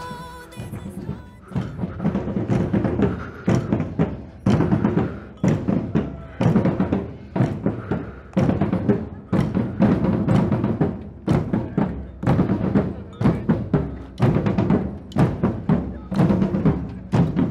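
A street drum band of large metal-shelled bass drums and smaller drums playing a driving rhythm, with heavy strokes about once a second and lighter strokes between. The drums start faintly about a second in and grow louder as the band comes close.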